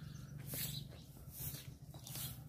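Faint animal calls over a low, steady background hum.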